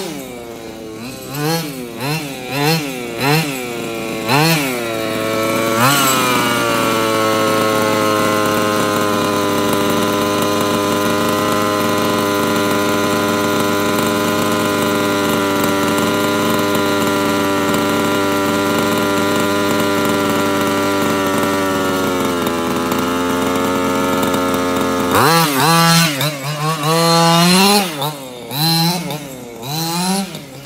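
HPI Baja 5B's stock 23cc two-stroke engine revving up and down in quick bursts as the RC buggy is driven. About six seconds in it settles to a steady pitch while the buggy stands. About 25 seconds in it starts revving in bursts again.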